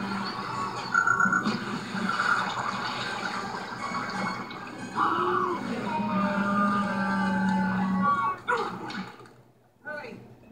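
An animated film's soundtrack playing from a television, music and sound effects heard through the set's speaker in a room, dropping away sharply just before the end.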